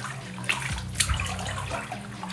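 Water sloshing in a full bathtub as laundry is worked by hand under the surface, clothes pushed and swished around to agitate them, with a couple of sharper splashes about half a second and a second in.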